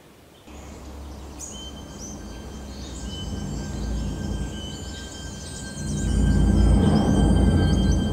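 Birds chirping in many short, high, sliding notes over a faint steady high tone. A low rumble builds beneath them and swells loudly about six seconds in.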